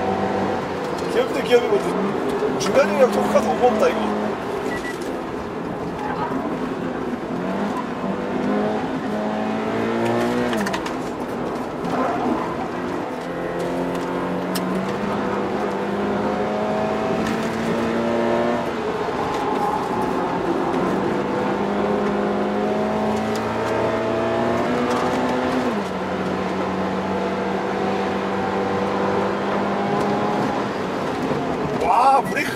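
Toyota GT86's flat-four engine heard from inside the cabin under hard track driving, revs climbing and then dropping back several times as the automatic gearbox shifts.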